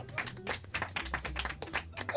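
A small group of people clapping their hands, a quick, irregular run of claps.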